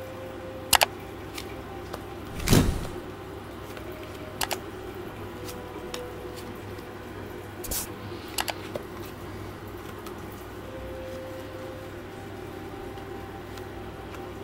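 Tarot cards being handled and laid out on a cloth-covered table: a few soft clicks and taps, with one louder thud about two and a half seconds in, over a steady low hum.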